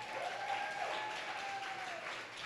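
Audience applauding, with a faint held tone running over the clapping that ends near the end.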